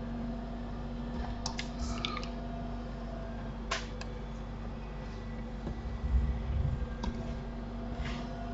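Steady low electrical hum of room tone with a few faint, sharp clicks in the first half. There are some soft low bumps about six seconds in.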